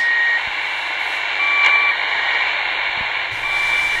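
The Squeaky Wheel, a Russian military shortwave station, received in upper sideband on a portable shortwave radio: a few short squeaky tones of different pitches over steady static hiss. This is the station's resting-state signal, sent when no message is being passed.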